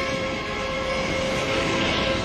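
Eerie soundtrack drone from a TV reenactment: a dense, steady wash of sound with a few held tones and no beat.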